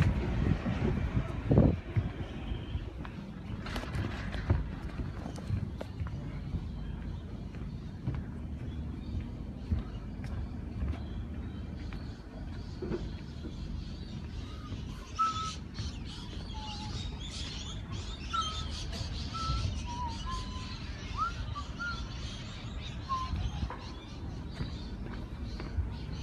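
A steady low rumble with a couple of thumps in the first few seconds. From about the middle on, birds chirp in short, scattered calls.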